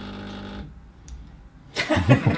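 A woman's voice holding a drawn-out hesitation sound, a short pause, then a burst of laughter just before the end.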